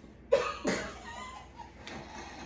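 A banana peel slapping against a face, then a cough-like splutter of held-in laughter through a mouthful of water. It comes as two sharp bursts less than half a second apart.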